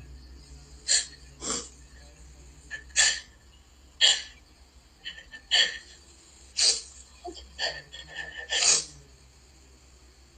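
A woman crying on a recorded jail phone call: short sharp sniffs and shaky, gasping breaths about once a second, with no words.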